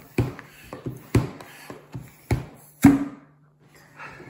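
The plunger of a toy squishy-maker pump being pushed down by hand, giving four sharp knocks about a second apart, the loudest near the end. A faint steady hum lies underneath.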